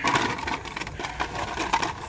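Hot Wheels blister-pack cards clicking and rustling as a hand flips through them on a pegboard hook: a run of small, irregular clicks.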